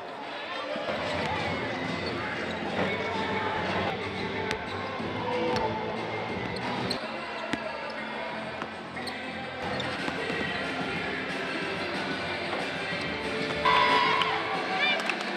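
Basketballs bouncing on a hardwood court, a scatter of short thuds, over music and indistinct voices in the arena.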